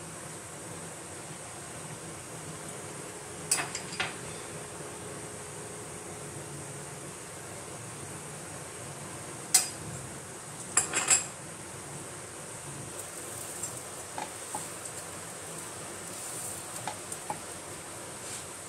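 Butter sizzling gently under pav buns toasting in a non-stick pan on low heat. A metal utensil clicks against the pan, twice about three and a half seconds in, sharply near ten seconds, and in a quick cluster around eleven seconds, with lighter ticks later.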